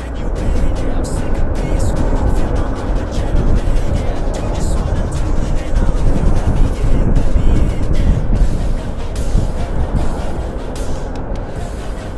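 Wind and road noise from riding a motorcycle, a steady loud rumble that grows louder just after the start, with background music.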